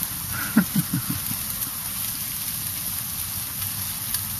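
Freezing rain and ice pellets falling, a steady hiss of pellets pattering on the ground, with a few brief low sounds about half a second to a second in.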